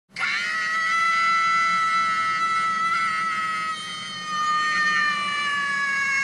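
One long, high-pitched held scream by a single voice, steady at first and sliding slowly down in pitch near the end, with a brief dip in loudness around the middle.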